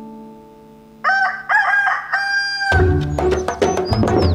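The last notes of a tune ring away. About a second in, a rooster crows a cock-a-doodle-doo in three parts ending on a long held note. Near the end, rhythmic percussion music starts.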